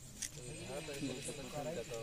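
Voices of several people talking, with a faint steady high-pitched trill of crickets behind them and a short click about a quarter second in.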